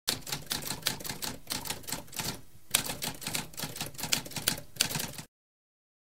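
Manual typewriter typing: a quick run of keystrokes that pauses briefly about halfway, resumes, and stops about five seconds in.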